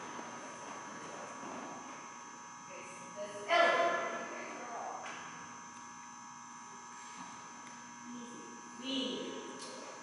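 Steady electrical hum with a faint buzz, heard through the open space of a large hall. A short, loud vocal call comes about three and a half seconds in, and a fainter one near the end.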